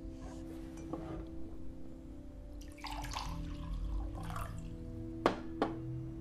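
A sustained, low film-score drone runs under small handling sounds at a table, with a stretch of liquid-like noise in the middle. Two sharp clicks follow near the end, half a second apart, the first the louder.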